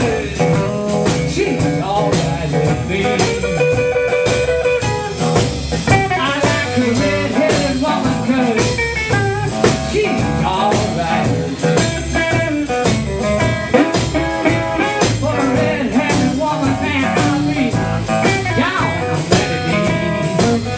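Live electric blues band playing: electric guitar, bass guitar and drum kit keeping a steady beat, with a held, sliding lead line through the frontman's handheld microphone.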